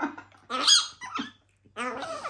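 Infant hamadryas baboon giving short, high squeaks while being spoon-fed porridge: a sharp squeak about half a second in, then a couple of smaller ones around a second in.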